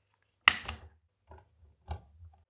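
Automatic wire stripper clamping and stripping the insulation off a blue neutral conductor: a sharp click about half a second in, quickly followed by a second, then a few small clicks and handling noises, with another click near the end.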